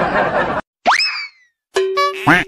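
Cartoon sound effects edited onto the video. A noisy burst is followed, about a second in, by a quick boing whose pitch shoots up and then slides down. A held buzzing tone starts near the end.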